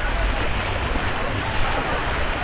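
Steady rush and slosh of deep floodwater churned by people wading around a stalled van, with wind rumbling on the microphone.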